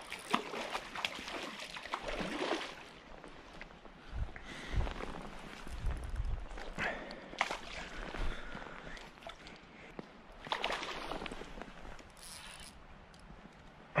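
Creek water trickling, with scattered rustles, knocks and footsteps on sand as an angler moves about the bank and casts a fishing rod.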